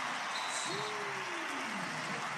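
A man's voice giving one long groan that falls in pitch over about a second and a half, heard over a steady background hiss.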